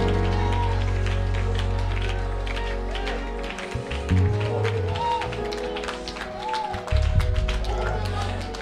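Live church band music with deep held bass notes and sustained chords. The bass drops out briefly a little past halfway. Scattered hand claps and taps run over it, with brief voice glides from the congregation.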